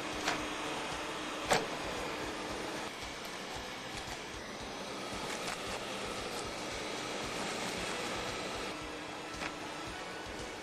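TurboVac two-motor upright vacuum running steadily over commercial carpet, with a few sharp clicks as it picks up debris; the loudest click comes about a second and a half in.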